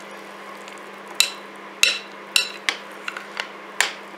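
Metal spoon clinking against a plate as it stirs star-shaped cereal in milk: several sharp clinks, irregularly spaced, starting about a second in, over a steady low hum.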